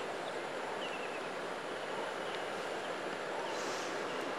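Steady outdoor ambience: an even, soft hiss with a few faint bird chirps.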